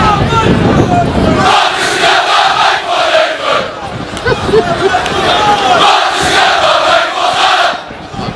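A huge crowd of football supporters cheering and chanting together in two long surges, with a brief dip about four seconds in.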